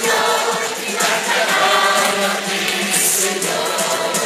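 A large crowd of many voices singing together along with loud music.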